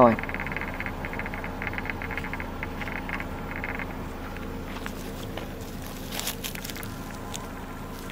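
Insects chirping in fast pulsed bursts, several clusters a second, fading out before halfway. Then irregular rustling and scraping as the snake is lifted on a snake hook and carried into ferns.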